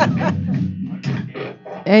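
Amplified electric guitar played loud and loose in a small room, unstructured sound-check noodling rather than a song, with laughter over it at the start.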